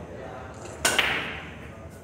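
Pool break shot on a nine-ball rack: two sharp cracks a split second apart, then a clatter of balls scattering and rebounding that fades away over about a second.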